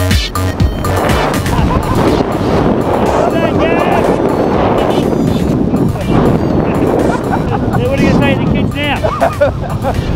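Wind rushing over the microphone during a tandem parachute descent under an open canopy, with two men laughing and whooping over it, loudest about three and a half seconds in and again near nine seconds.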